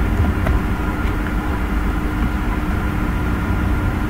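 Steady low rumbling background noise with a faint constant hum, and a faint click or two of typing on a keyboard about half a second in.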